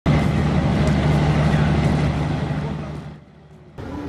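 A motor running steadily with a low hum, fading out about three seconds in.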